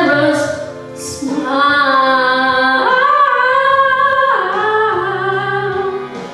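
A boy with an unbroken voice singing long held notes without words, the pitch stepping up about three seconds in and falling back just after four.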